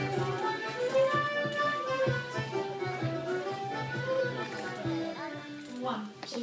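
A lively traditional folk dance tune on folk instruments: a melody over a held bass note. It falls away near the end.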